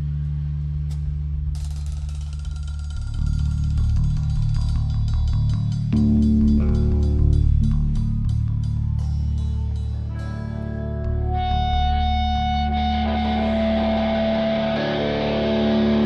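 A live rock band's electric guitars and bass playing a slow instrumental passage: a steady low bass drone under picked guitar notes, giving way to long sustained guitar notes in the second half.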